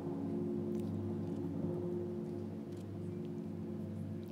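Low, sustained suspense music: a steady drone of held tones with no melody, with a few faint clicks over it.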